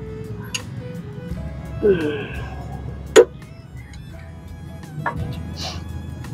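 Sharp metallic clicks of a wrench working on a truck's steering gear, the loudest about three seconds in and a smaller one near the end, over faint steady background music.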